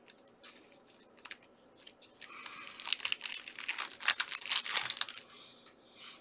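Foil trading-card pack wrapper being torn open and crinkled by hand: a few light crackles, then a dense run of tearing and crinkling for about three seconds in the middle.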